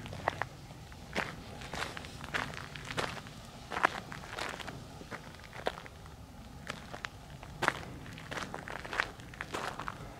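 Footsteps walking on loose gravel over old, broken asphalt, a crunching step about every half-second to second.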